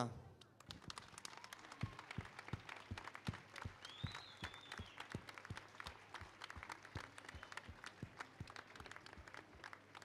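Faint, thin applause: scattered hand claps at an irregular pace, with a brief high rising-and-falling sound about four seconds in.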